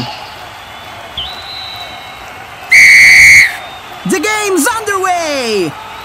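Referee's whistle blown in one loud, steady blast lasting under a second, about three seconds in, signalling the kickoff. A fainter short tone comes before it, and voices chatter after it.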